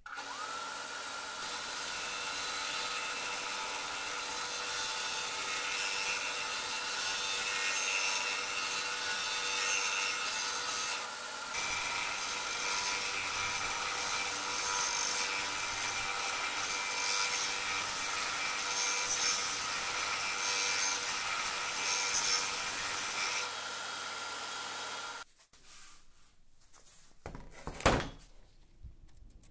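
Benchtop disc sander running steadily with a steady whine from its motor as the edge of a steel plate cut from a chainsaw guide bar is ground against the abrasive disc, throwing sparks. The sound cuts off abruptly near the end, and is followed by a single sharp knock.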